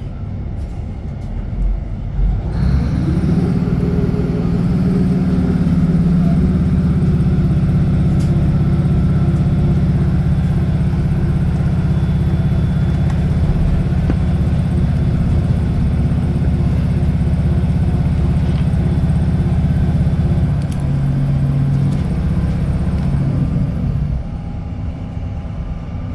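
Class 156 Super Sprinter diesel multiple unit heard from inside the carriage. Its underfloor Cummins diesel engine rises in pitch as it opens up a couple of seconds in, then runs steadily under power with a deep drone. Later it drops to a lower note and dies away near the end, leaving the rumble of the wheels on the track.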